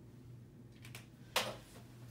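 A single sharp click about one and a half seconds in, as a dry-erase marker is capped or set down at the whiteboard, with a few faint ticks before it. A low steady hum runs underneath.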